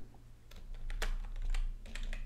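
Typing on a computer keyboard: a handful of separate key clicks, starting about half a second in.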